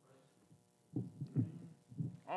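Two dull low thumps about a second in, close to the pulpit microphone, as of hands or a book knocking on the wooden pulpit, over faint room murmur.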